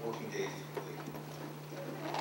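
A voice speaking over a hall's sound system, with a steady low hum and a few light clicks near the middle.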